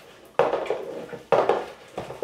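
A utensil stirring slime in a plastic tub, with two sharp clattering knocks, about half a second in and about a second and a half in.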